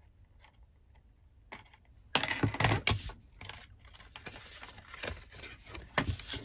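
Cardstock pieces being handled and slid on a craft mat: quiet at first, then a sudden loud rustle and scrape about two seconds in, followed by lighter scratchy handling sounds.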